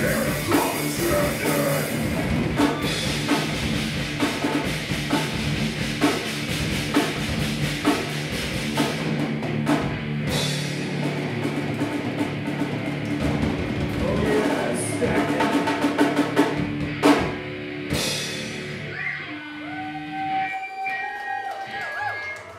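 Live heavy metal band with electric guitars and drum kit playing an instrumental passage of the song, closing with two big accented hits about 17 and 18 seconds in, then the chord ringing out and fading.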